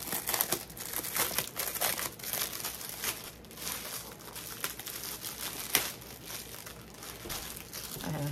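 Clear plastic packaging bag crinkling irregularly as it is handled and opened, with one sharp snap about two-thirds of the way in.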